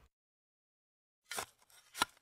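Dead silence, then two short noises about two-thirds of a second apart near the end.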